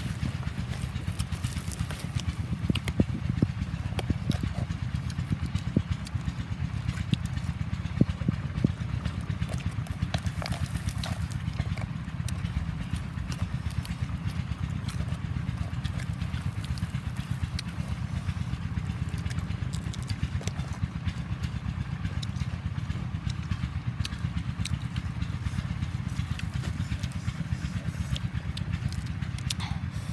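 Crisp bites and chewing of raw red bell pepper, with sharp crunching clicks that are thickest in the first nine seconds or so. A steady low rumble runs underneath throughout.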